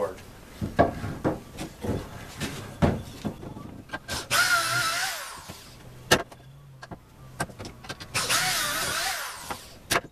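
Drill boring pocket holes in a 2x4 held in a Kreg pocket-hole jig: two runs of whining drilling, each a second or so long, about four and eight seconds in. Before them come clicks and knocks as the board is clamped into the jig.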